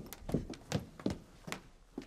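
Footsteps of heeled shoes walking down stairs, sharp clicks at about three steps a second.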